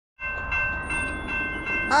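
Railroad crossing warning bell ringing in quick, even strokes, a steady high metallic ring. A train horn starts to sound near the end.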